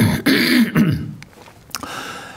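A man clearing his throat close to a microphone, a short raspy vocal sound lasting under a second, followed by a quieter pause.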